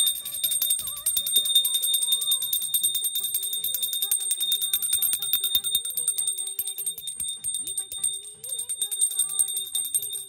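A small brass puja hand bell rung rapidly and without a pause, a continuous bright jangling ringing, as is done while the camphor flame is waved in aarti.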